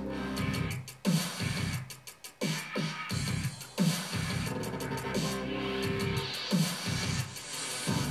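WrestleMania pinball machine playing its electronic game music while waiting for the ball to be plunged, with repeated falling low swoops and sharp clicks.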